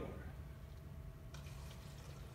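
Water poured from a glass into a cup, a faint trickle in the second half, over a steady low hum.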